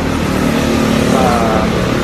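A road vehicle's engine running close by over steady street traffic noise.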